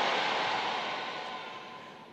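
Congregation applauding, dying away gradually over about two seconds.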